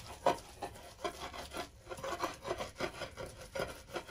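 A round stone rubbed back and forth in a clay namak-yar grinding bowl, crushing chopped herbs and walnuts. A regular run of scraping strokes, about three a second, with a short break a little before the middle.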